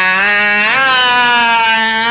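A man singing one long held note that slides up in pitch under a second in, then holds with a slight waver, over a steady low drone.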